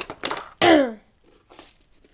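A girl's short vocal sound with falling pitch, about half a second in, followed by faint handling sounds of items in a plastic storage box.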